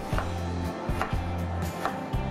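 Kitchen knife cutting peeled eggplant into chunks on a wooden chopping board: three sharp knife strikes against the board, about a second apart, over background music.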